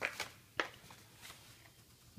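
A few soft, short clicks and crackles, strongest in the first second, of plastic-and-card blister packs of toy die-cast cars being handled and swapped.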